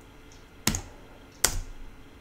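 Two sharp clicks on a computer keyboard, about three quarters of a second apart.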